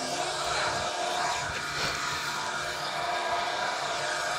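Steady background hiss and low hum with no bang: the toy pop-bag grenade fails to burst.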